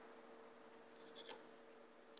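Near silence: faint room tone with a steady low hum and a few faint clicks about a second in.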